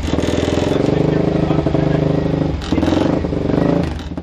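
Single-cylinder Suzuki 450 race engine running in the pit garage, its revs dipping briefly about two and a half seconds in and then picking up again, as the bike is tried after its jammed clutch was stripped.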